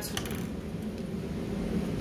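A steady low room hum from ventilation, with a few faint handling sounds from a folded paper piece just after the start.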